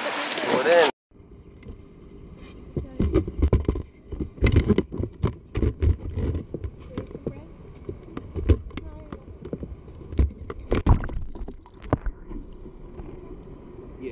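A brief loud burst of voice and wind, then, heard from a camera inside it, a clear plastic fish trap being handled out of the water: muffled, irregular knocks and taps on the plastic, clustered between about three and eleven seconds in.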